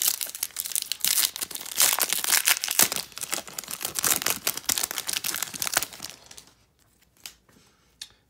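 Baseball card pack wrappers being torn open and crinkled in the hands: dense crackling for about six seconds, then it stops.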